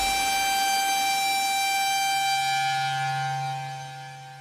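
Hardstyle music in a breakdown: held electronic synth tones with no kick drum. A low held bass note comes in about halfway, and the sound fades toward the end.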